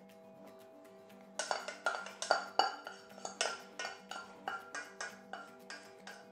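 Spoon scraping and knocking melted butter out of a small stainless-steel saucepan over a steel mixing bowl: a quick, uneven run of metallic clinks with a short ring, starting about a second and a half in, over steady background music.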